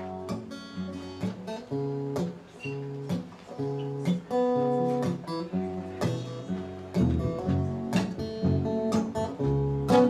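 Steel-string acoustic guitar playing an instrumental introduction, plucked and strummed at a steady pulse, with an upright double bass playing low notes beneath it. The bass notes get deeper and stronger about seven seconds in.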